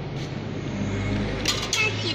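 Coin-operated dinosaur kiddie ride being started: a steady low hum, then a few sharp clicks about one and a half seconds in as the coin goes into the slot, and the ride's recorded children's song starting near the end.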